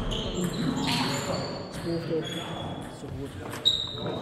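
Table tennis balls clicking off bats and tables, a few sharp ticks with a short high ring after them, the loudest near the end, over background voices.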